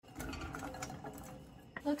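Chopped onion, carrot and mushroom tipped from a bowl into a hot frying pan on a gas burner, the pieces clattering in quickly and starting to sizzle as they begin to sauté.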